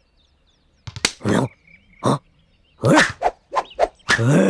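Cartoon character's wordless vocal sounds: several short voiced bursts with pitch glides, starting about a second in after a moment of near quiet.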